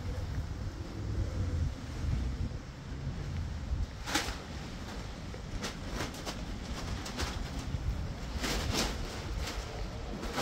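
Wind rumbling on the microphone while chickens in a coop make low calls. Several short sharp clicks come from about four seconds in.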